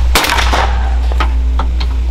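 A shotgun fired once at a clay target: a single sharp report just after the start, ringing out over the range.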